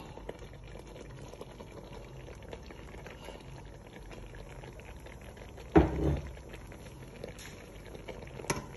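Pot of white soup boiling with a steady bubbling as ground crayfish is added. A single loud knock about six seconds in.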